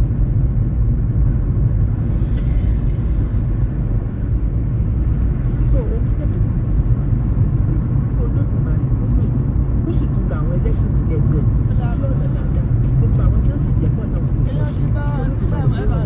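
Steady low rumble of a car driving, engine and road noise heard from inside the cabin.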